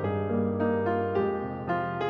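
Background piano music: a gentle melody of single notes struck about every half second over sustained low notes.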